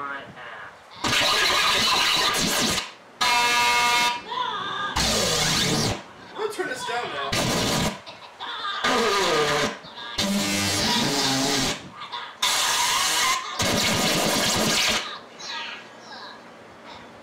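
Cut-up cartoon soundtrack of a YouTube Poop edit: a string of loud, harsh noisy bursts, each about a second long, that cut in and out abruptly, between snatches of cartoon voices, minion squeals and music.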